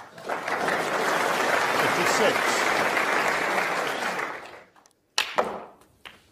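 Snooker crowd applauding, a dense steady clatter of clapping with some voices mixed in; it fades away a little past the middle and cuts off, followed by a brief sharp sound near the end.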